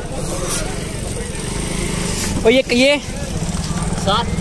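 A motor engine running, a steady low drone, with a short burst of a voice about two and a half seconds in.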